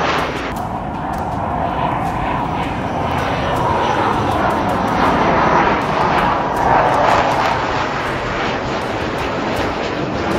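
Jet engines of a Navy EA-18G Growler flying low overhead with its landing gear down on a touch-and-go approach. A loud, continuous roar whose pitch sweeps slowly down and up as the jet passes, loudest about four and seven seconds in.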